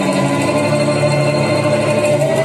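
A violin and a cello playing a duet, bowing long held notes.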